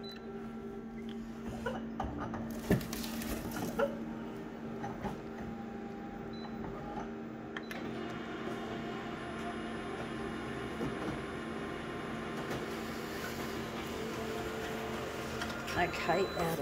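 Office colour photocopier humming, with a few clicks and knocks about two to four seconds in as the copy is started. From about eight seconds in, the copier's scanning and printing mechanism runs with a steady whirr while it makes a full-colour copy. Near the end there is a burst of rustling and knocking as the printed sheet is handled at the output tray.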